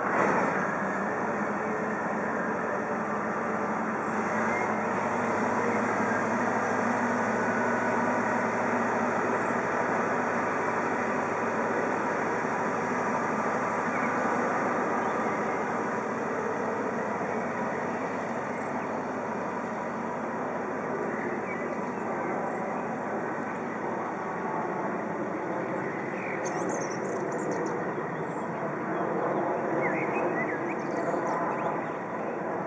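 SBB Tm IV diesel shunting locomotive running as it hauls a long train of covered freight wagons slowly, the wagons' wheels rolling over the rails in a steady rumble, with a brief high squeal near the end.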